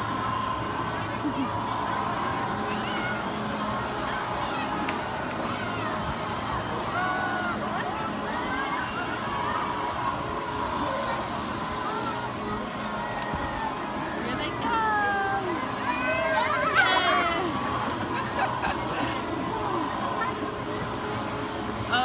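Children's voices and chatter around a spinning children's helicopter ride, with a burst of several high, excited voices about fifteen seconds in, over a faint steady hum.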